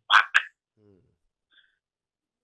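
A man's voice over a phone line trailing off at the end of a sentence in the first half-second, then near silence.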